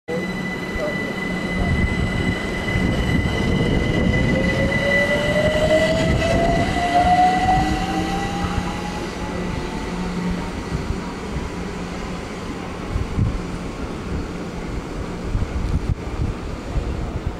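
London Overground Class 378 Electrostar electric multiple unit pulling away and accelerating, its traction motor whine rising steadily in pitch for several seconds over the rumble of the wheels on the track. A steady high tone sounds throughout, and the sound peaks about seven seconds in, then eases as the train draws away.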